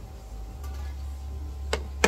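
A single sharp plastic click about three-quarters of the way through as the flip-off cap comes off a small glass vial, over a low steady rumble.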